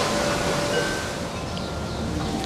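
Steady rushing background noise with a few faint, brief high tones.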